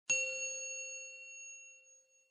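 A single bell-like chime, struck once and left to ring, with a low tone under several high ones, fading away over about two seconds: the ding of a logo intro sound effect.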